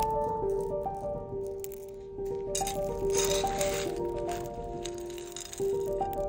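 Gravel stones rattling and crunching as a toddler scoops and scrapes them with a plastic trowel, loudest in a burst of scrabbling about halfway through, under background music of slow, held notes.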